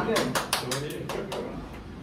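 A quick, irregular run of about ten sharp hand claps that thins out and fades within a second and a half.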